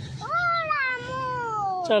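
A young girl's long, drawn-out whining cry, one sustained voice that rises briefly and then slides slowly down in pitch for most of two seconds.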